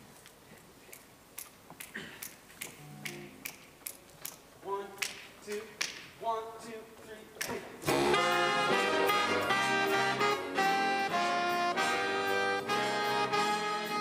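Jazz big band starting a tune. A soft, regular ticking beat with a few bass and piano notes comes first, then the full band with trumpets and saxophones comes in loudly about eight seconds in.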